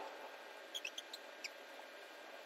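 A bird chirping faintly: a quick run of short, high chirps, each falling in pitch, about a second in, over a steady faint outdoor hiss.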